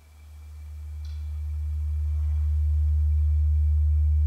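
A deep, pure electronic sine tone fading in from silence and swelling to a steady level over about three seconds.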